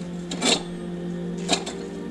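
Lever-action well hand pump being worked: two short sharp clanks of the handle strokes about a second apart, the first the louder, over steady background music.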